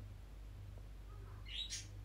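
A quiet pause with a steady low hum, and a brief faint high-pitched sound about one and a half seconds in.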